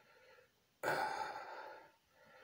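A man's sigh: one breathy exhale that starts suddenly about a second in and fades out over about a second.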